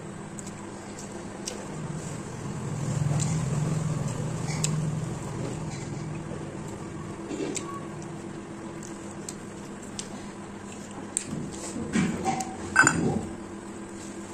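A person eating rice and curry by hand from a plate: chewing, with scattered light clicks and clinks of fingers and rings against the plate, and a louder cluster of clinks near the end.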